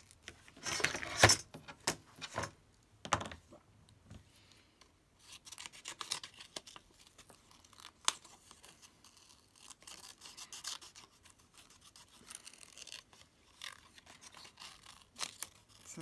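Paper rustling and crinkling in short, irregular bursts as a printed paper cut-out is handled and bent, with one sharp click about eight seconds in.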